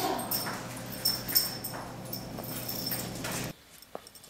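A German Shorthaired Pointer whimpering, with thin high whines and a few short louder cries, until the sound cuts off suddenly about three and a half seconds in.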